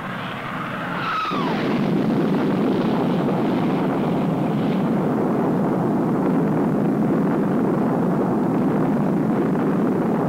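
Low, fast pass of F-104 Starfighter jets, their J79 turbojets giving a falling whine as they go by. The whine cuts off about a second in and gives way to a loud, steady rumbling roar.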